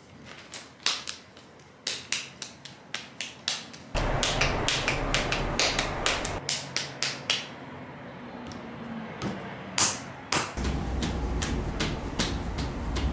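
Hands slapping and patting a lump of moist red clay between the palms to form it into a ball for a Raku tea bowl: a run of sharp, flat pats, about three a second, in bursts with short pauses.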